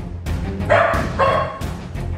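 A Labrador barking twice, half a second apart, over background music with a steady low beat.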